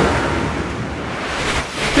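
A rushing whoosh transition sound effect like wind or surf, thinning out in the middle and swelling again toward the end.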